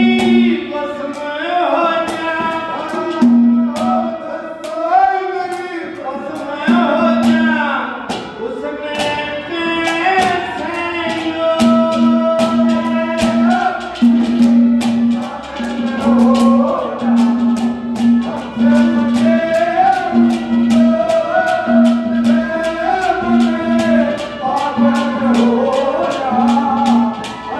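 Live devotional bhajan: a singing voice with hand-drum accompaniment and sharp rhythmic clicks. From about halfway in, a low note pulses about once a second under the song.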